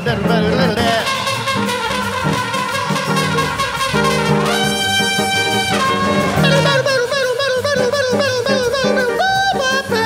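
Live jazz band with a trumpet playing a solo over upright bass and guitar. About halfway through, one long high note is held for over a second.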